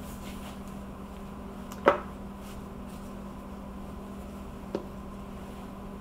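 A cloth being handled and tucked around a polycarbonate chocolate mold on a silicone mat: faint handling noise with one sharp click about two seconds in and a smaller one near the end, over a steady low hum.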